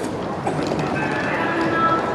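Footsteps of a walking crowd on a paved street, with music playing from about half a second in.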